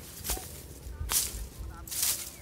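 Vegetation swishing and rustling as grass stems and leafy branches brush against someone pushing through dense brush on foot, in three short swishes, the loudest about a second in.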